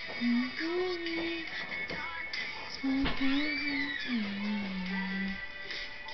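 Recorded music playing: a song with a singing voice that holds long notes, stepping between a few pitches.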